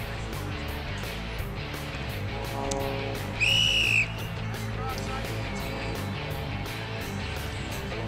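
A referee's whistle gives one sharp blast of a bit over half a second, about three and a half seconds in, signalling play to restart. Music with a steady beat plays underneath throughout.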